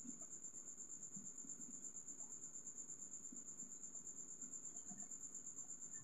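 A faint, steady, high-pitched insect-like trill over quiet room noise.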